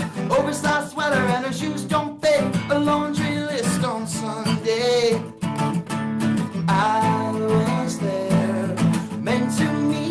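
Acoustic guitar strummed steadily while a man sings a melody over it.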